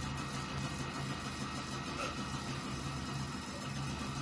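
A steady low hum with a background hiss, unchanging through the pause in the voice-over.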